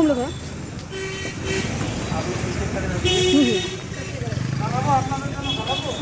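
Vehicle horns honking in street traffic: a short, fainter honk about a second in and a louder honk of about half a second at three seconds, over a low traffic rumble.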